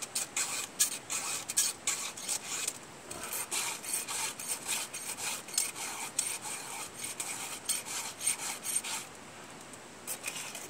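Round file sharpening the chain of a Husqvarna chainsaw by hand: a quick series of short rasping strokes across the cutter teeth, with a brief pause about three seconds in and a stop near the end.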